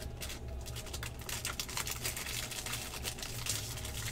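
Foil wrapper of a 2016 Bowman Draft jumbo pack crinkling in a dense run of small crackles as hands handle it and tear it open.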